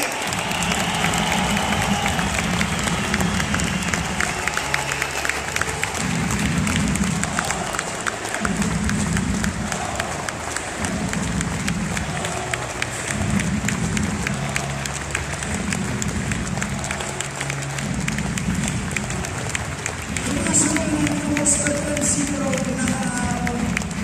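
Arena crowd applauding steadily, with slow music of long, held low notes playing under it.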